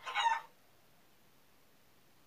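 A hen's short call, a single pitched squawk lasting under half a second.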